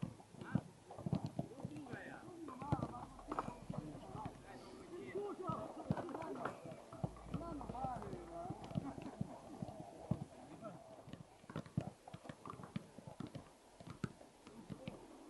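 Footballs being kicked and touched by several players on artificial turf, an irregular stream of short thuds, with people talking in the background.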